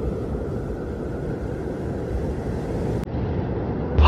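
Steady low rumbling background noise with no distinct events, shifting slightly about three seconds in.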